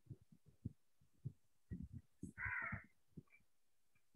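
Faint, irregular low thumps, with one short harsh bird call about two and a half seconds in.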